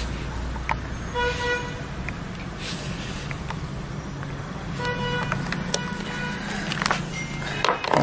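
Two short horn-like toots, about a second in and again near five seconds, over a steady low hum, with a few light clicks.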